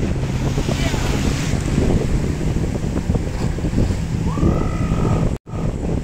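Wind buffeting the microphone over the steady wash of surf at the shoreline. The sound cuts out for an instant near the end.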